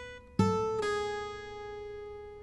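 Acoustic guitar notes on the high strings: the previous note dies away, a new note is plucked on the first string, then an index-finger pull-off drops it to a lower note that rings on and slowly fades.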